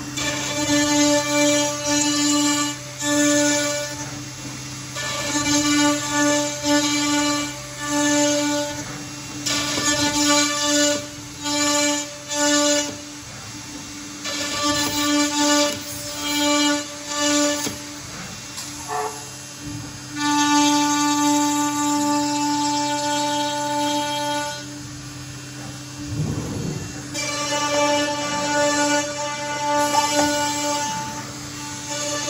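CNC router spindle whining at a steady high pitch while the machine cuts a board, in repeated bursts of about a second with short pauses between them, then one longer cut of about four seconds past the middle.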